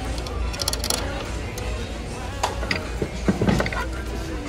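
Melamine dinner plates clicking and clattering against each other as one is lifted from a stack, in a few short bursts, loudest near the end. Background music plays throughout.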